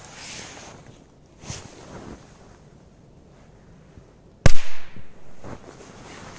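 A 'Mickey Mouse' firecracker (petard) set upright in snow, its lit fuse hissing briefly at the start, then going off with one loud, sharp bang about four and a half seconds in.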